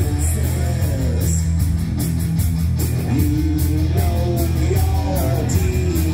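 A live heavy metal band playing: distorted electric guitars, bass and drums with steady cymbal strokes, under a male lead vocal.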